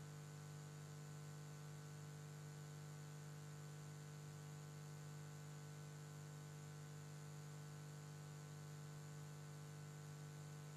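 Near silence with a faint, steady electrical hum in the recording.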